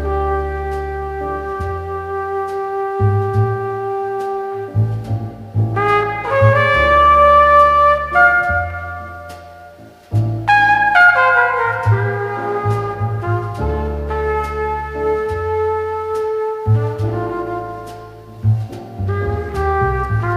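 Slow jazz ballad: a trumpet plays long held notes over double bass, piano and drums with light cymbal ticks. The trumpet line rises and swells loudest about six to eight seconds in, fades nearly away just before ten seconds, then starts a new phrase.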